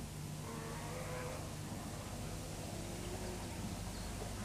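Engines of off-road race vehicles droning at a distance: a steady low hum whose pitch wavers.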